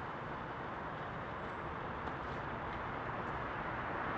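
Steady rush of motorway traffic on the bridge overhead, an even haze of tyre noise that grows a little louder near the end.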